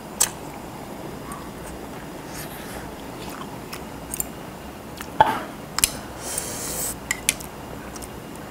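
Chewing on hot noodles from spicy fish stew. Several sharp clicks of metal chopsticks against the bowl come mostly in the second half, the loudest a little past halfway.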